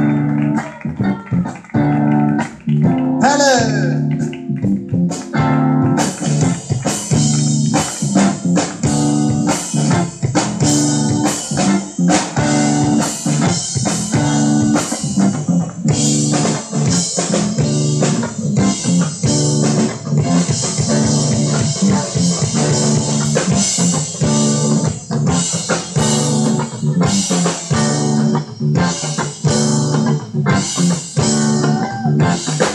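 Live rock band of electric guitar, bass guitar and drum kit playing together. The drums come in about six seconds in with a steady beat, and the cymbals grow busier from about halfway through.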